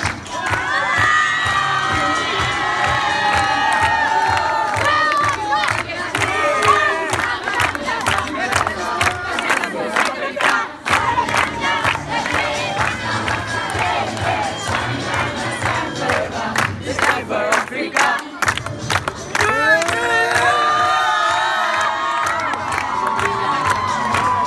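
A crowd of schoolchildren cheering and shouting, many voices at once, with many sharp claps through the middle stretch.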